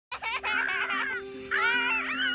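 A young girl laughing with high-pitched squeals, in two runs with a short break about a second in, over a held chord of background music.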